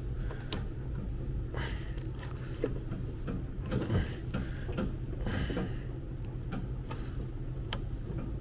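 Hand-threading a plastic hose fitting onto the inlet of a Supco Portablaster coil-cleaning sprayer: scattered clicks and scrapes of plastic on plastic, over a steady low hum.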